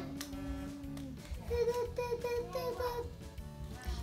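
A child humming and softly singing a tune to herself over background music.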